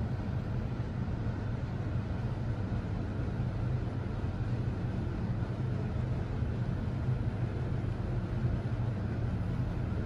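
Mitsubishi GPS machine-room elevator car travelling upward, heard from inside the car: a steady low hum and rumble of the ride.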